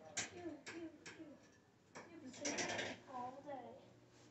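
Indistinct, quiet speech from people nearby, with a few sharp clicks early on and a short noisy rustle a little past halfway.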